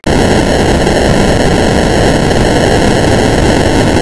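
Loud, harsh static-like noise from a heavily distorted, effects-processed audio track, starting abruptly and holding steady.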